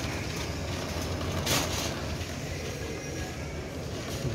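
Shopping trolley rolling and rattling over a store floor, with a brief louder clatter about one and a half seconds in.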